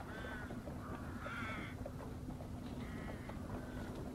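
Crows cawing faintly, three short calls spread over a few seconds.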